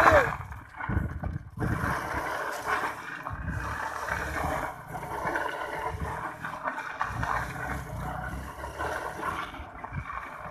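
Motorcycle running with its rear tyre spinning and spraying loose dirt through a donut, a steady rough noise without a clear engine note.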